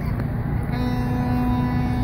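Steady outdoor street and crowd noise, with a horn starting under a second in and holding one low, steady note.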